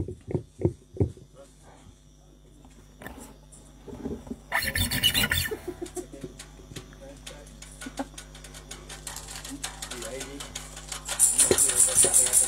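Instruments being handled between songs: a few soft knocks, a short rustle about five seconds in, then scattered light ticks and plucks on strings. Near the end a tambourine is shaken, its jingles going in a quick, steady rhythm.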